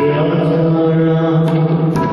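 Devotional chanted singing of the kind heard at a Sikh religious gathering. A voice holds one long, steady note over musical accompaniment, and a few drum strokes come in near the end.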